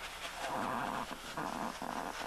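An animal growl in three rough bursts, the first the longest, about half a second in.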